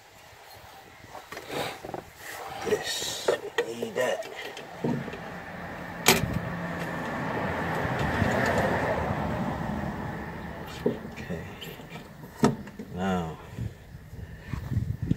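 A passing vehicle swells and fades through the middle, over scattered clicks and knocks from hands fitting the fuel pump assembly into its tank opening, one sharp click about six seconds in.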